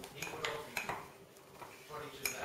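A metal spoon stirring a cocoa cake mix in a ceramic mug, clinking against the mug several times in the first second.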